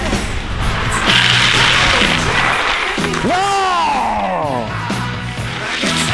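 Skis scraping and grinding over loose scree and gravel, over a music track. About three seconds in, a long wordless yell rises and then slowly falls away.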